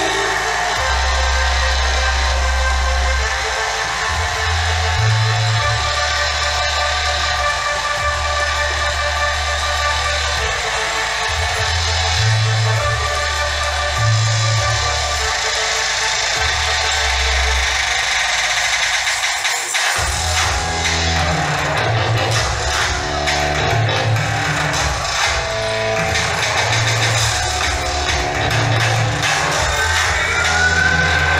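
Recorded music with a deep, heavy bass line. About two-thirds of the way through, the bass drops out for a moment and comes back in a quicker pulsing pattern.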